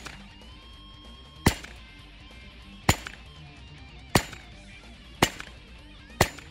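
Four 9 mm pistol shots from a Glock in an MCK carbine conversion kit, about one every second and a quarter, knocking down steel popper targets that ring faintly as they are hit.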